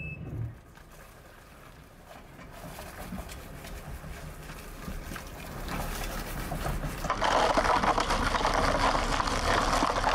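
A car with its wheel made of cola-filled plastic bottles wrapped in tape, rolling slowly in reverse over concrete. There is a low engine hum under crinkling and crackling of the plastic against the ground. The sound grows gradually, then becomes much louder and closer about seven seconds in.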